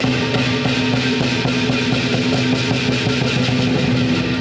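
Traditional lion dance percussion playing loudly: quick, steady strikes of drum and cymbals over a sustained ringing gong.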